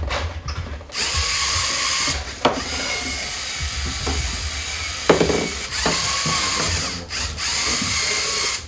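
Small electric motors and gearing of a LEGO robot whirring steadily, with a couple of sharp knocks, about two and a half and five seconds in.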